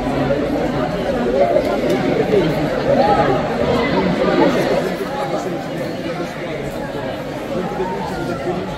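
Overlapping chatter of many voices, children's among them, with no one voice standing out, in a large sports hall; it eases a little about five seconds in.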